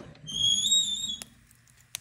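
The metal door of a wood stove is swung open on its hinge, which gives a high, slightly wavering squeal lasting about a second. Two short clicks follow, one in the middle and one near the end.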